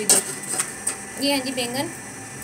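A voice says a short word over light clicking and clatter from things being handled on a kitchen counter, with one sharp knock just after the start.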